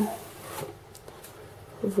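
Faint rustle of a spoon scooping semolina out of a paper packet, with one light tick about half a second in.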